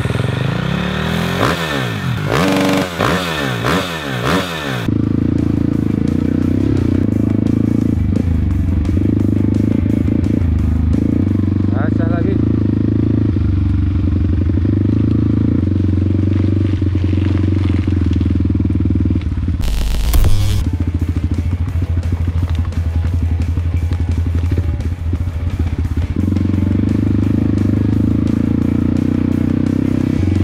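A short intro jingle with sweeping pitch glides for about the first five seconds. Then a dirt bike's engine, heard from on board, runs steadily under way, with a short loud burst of noise about twenty seconds in.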